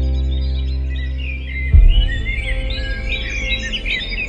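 A soft ambient music pad fades out. Just under two seconds in a single deep low thump hits, and birds chirp and twitter in quick, high, varied notes over a low steady hum.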